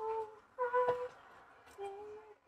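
A person humming a tune in short held notes: two notes in the first second, the second slightly higher, then a pause and a lower note starting near the end.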